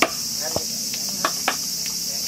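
Steady high-pitched chorus of summer insects, with several sharp knocks over it, the loudest right at the start and smaller ones about half a second, a second and a quarter, and a second and a half in.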